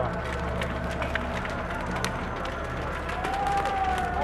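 A large building fire crackling and popping in frequent sharp snaps, over a steady low hum.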